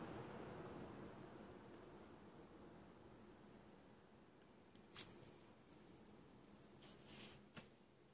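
Near silence: faint room tone, with a soft click about five seconds in and a brief faint hiss and another click near the end.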